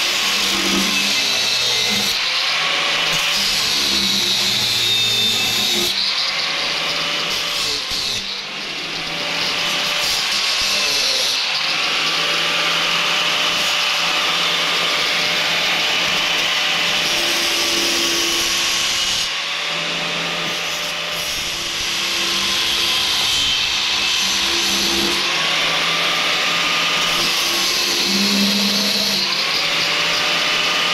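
DeWalt angle grinder with a thin cut-off wheel cutting steel clamped in a vise, running without a break. Its motor pitch sags and recovers again and again as the wheel bites into the metal and eases off.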